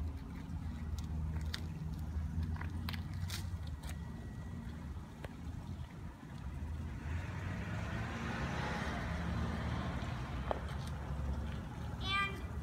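Steady low outdoor rumble with a few light clicks, and a car passing in the street about seven seconds in, swelling and fading away over about three seconds.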